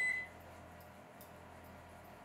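A single electronic beep, one steady high tone, that cuts off about half a second in; then quiet, with faint rubbing of fingers on wet paper.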